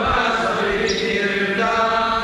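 A group of voices chanting a line of a Sanskrit verse together in unison, their pitches blurring into one another. This is the response in a call-and-response recitation of the verse.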